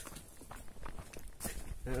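Footsteps on a dry dirt path: irregular scuffs and taps while walking. A man's voice starts near the end.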